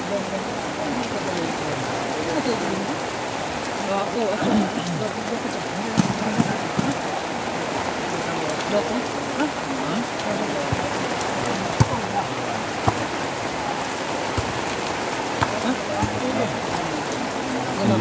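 Steady rain falling on a flooded dirt court and its puddles, with a few sharp taps, the loudest about six and twelve seconds in.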